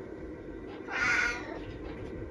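Tabby cat meowing once, about a second in: a short call demanding breakfast.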